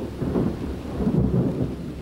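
A low, continuous rumble with a hiss above it, like thunder and heavy rain, laid under the soundtrack as a storm effect.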